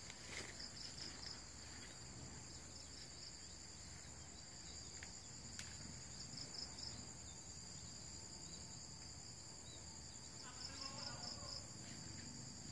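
Faint, steady high-pitched insect chirring, with short bursts of rapid pulsed chirps every few seconds.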